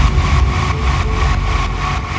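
Uptempo hardcore track in a breakdown with no kick drum: a steady low rumbling drone under held higher tones, with a faint regular pulse.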